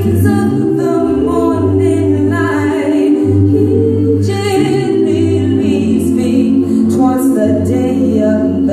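A mixed a cappella gospel vocal group singing in close harmony, with held low bass notes under the melody.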